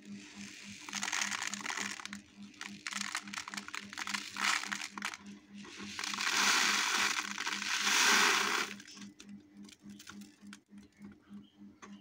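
Small cabbage seeds poured from a plastic dehydrator tray into a rolled paper cone: a rustling hiss with scattered ticks. The hiss is loudest from about six to nine seconds in, then gives way to a few light ticks as the last seeds drop.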